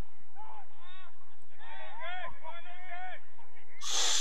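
Footballers shouting out on the pitch, heard from a distance as a string of calls. They are appealing for a foul.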